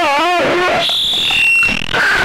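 A person's voice through GarageBand's Bullhorn voice effect, heavily distorted, sliding up and down in pitch. About a second in, a shrill steady high tone sounds, then drops to a lower pitch before it cuts off.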